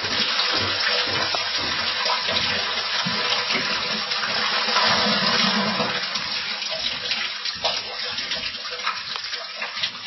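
Water standing in a sump pump's discharge pipe pouring back down into the sump pit as the check valve's flapper is pushed open, a steady rush that eases off over the last few seconds as the pipe empties.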